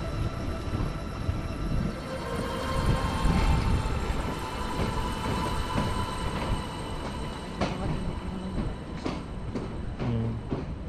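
A steady low rumble with a thin, sustained whine through the middle, and a few faint knocks near the end.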